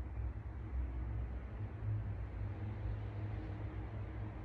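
Room tone: a steady low hum with a faint even background hiss.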